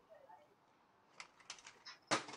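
Near silence, with a few faint clicks in the second half from hard plastic toy parts being handled.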